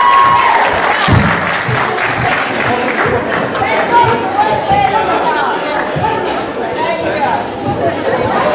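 Indistinct crowd chatter echoing in a large sports hall, with scattered applause.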